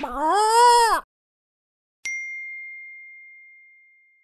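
Audio logo sting: the last, long note of a rooster crow arches up and down in pitch and stops about a second in. About two seconds in, a single bright bell-like ding strikes and rings out, slowly fading.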